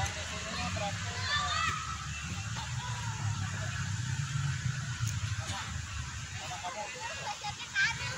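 Children's voices calling out across an open football field, in short high calls about a second in and again near the end, over a steady low rumble.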